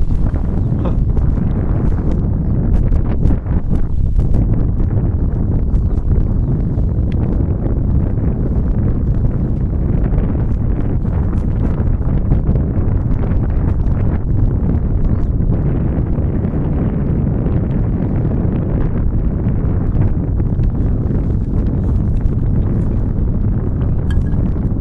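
Wind buffeting the camcorder's microphone: a loud, steady low rumble with scattered crackles.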